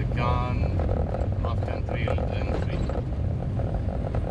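Steady low drone of a Jeep Cherokee XJ's engine and road noise inside the cabin while driving, with short bits of a man's voice.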